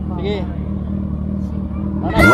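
Kawasaki ZX-6R sport bike's inline-four engine idling steadily, with a short spoken word near the start.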